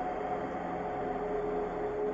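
A dark ambient background-music drone: a few low, steady held tones over a faint hiss, with no beat or sudden sounds.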